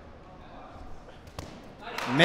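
A rubber ball smacks once on the concrete floor of a large hall, a single sharp bounce about two-thirds of the way in from a hard throw at the goal, over low room noise.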